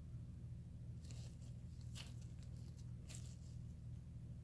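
Faint crinkling of nitrile gloves, a few short crackles about one, two and three seconds in, as a gloved hand turns a small copper coin over, over a steady low hum.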